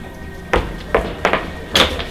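Five sharp hits in quick, uneven succession.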